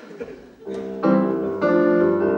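Electronic keyboard on a piano sound playing chords: a soft chord just over half a second in, then louder chords about a second in and again shortly after.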